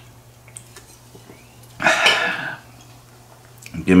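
A man drinking from a can, with faint swallowing, then a single loud, rough throat noise lasting under a second about two seconds in.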